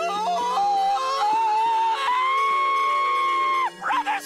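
A cartoon character's high, wavering shriek of horror that settles into one long held note and breaks off near the end, over sustained background music.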